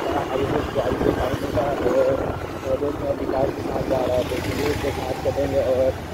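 Wind buffeting the microphone of a moving motorcycle, a steady choppy low rumble, with a voice talking indistinctly over it.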